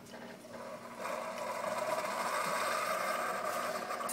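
Single-serve pod coffee brewer at the end of its brew cycle: about a second in, the machine's sound grows louder and holds steady as its pump pushes the last water and air through the pod, and the stream into the mug stops.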